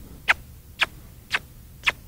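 A horse trainer's tongue clucks to a young horse in hand, four short sharp clicks evenly spaced at about two a second. They are a voice aid asking the mare for more energy in her steps.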